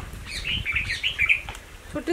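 A small bird chirping: a quick run of short, high notes lasting about a second, over a low rumble.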